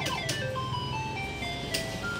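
Electronic fruit slot machine ('maquinita') playing its spin sound as the light runs round the ring of fruit symbols: a falling run of short beeps stepping down in pitch as the spin winds down toward its stop.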